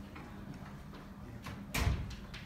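Chalk tapping on a blackboard in scattered light ticks as an integral is written out, over a steady low hum, with one brief louder noise near the end.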